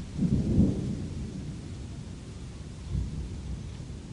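Thunder rumbling: a low roll swells in just after the start, is loudest within the first second, then dies away, with a smaller second rumble about three seconds in, over a steady hiss of rain.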